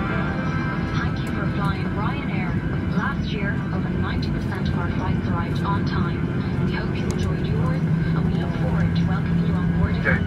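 Cabin of a Boeing 737-800 taxiing after landing: the steady low rumble of its CFM56 engines at taxi power, with a low hum that grows stronger near the end, under the chatter of many passengers talking at once.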